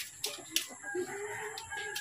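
A long animal call held at one pitch, beginning near the middle, with two short sharp knocks before it.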